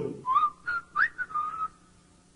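Whistling: a short phrase of about five high notes, some sliding upward, that stops before the end.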